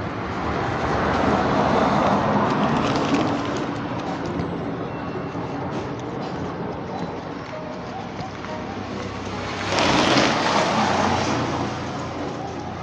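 Road traffic going by: a steady rushing noise that swells about two seconds in and again near the end, like vehicles passing.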